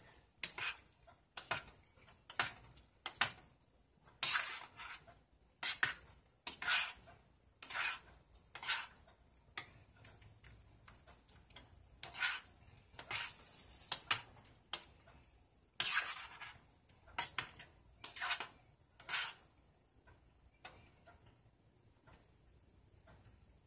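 Rotini pasta being stirred in a stainless steel saucepan: irregular scrapes and clinks of the utensil against the metal pot, with one longer scrape about halfway through, and the stirring stops a couple of seconds before the end.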